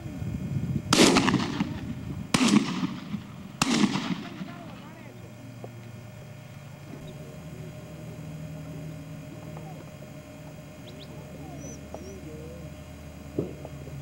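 Three shotgun shots a little over a second apart, each with a short echoing tail, fired at doves overhead.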